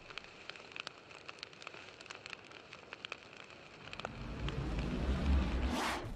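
Faint, scattered crackles and ticks over a low hiss, then a low rumble that swells up over the last two seconds.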